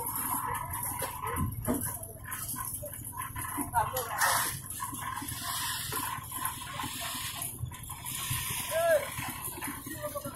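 Indistinct voices calling, with a short rising-and-falling cry about nine seconds in, the loudest sound.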